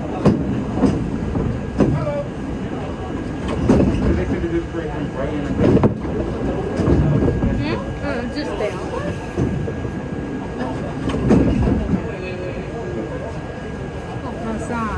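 Budd R32 subway car heard from inside while running: a steady rumble with irregular knocks and clatter from the wheels over the rails, and a faint steady whine.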